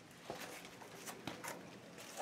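Faint scuffing steps and a few light knocks of a person descending narrow stone stairs between rock walls.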